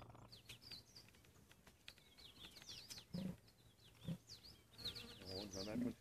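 Small birds chirping in quick, high, repeated notes, faint and steady through the bush, with two short low thumps about three and four seconds in.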